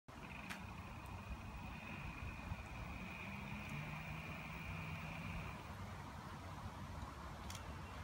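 GolfSkateCaddy electric golf scooter driving on wet asphalt: a faint steady high whine from its electric drive over a low hum, the whine dropping out a little past halfway through.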